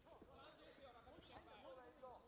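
Faint shouting from many spectators' voices at once during a full-contact karate bout, with a few soft thuds from the fighters' blows on the mat.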